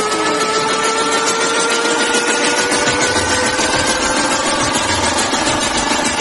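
Electronic riser sound effect: a loud, dense buzzing hiss with several tones gliding slowly upward in pitch.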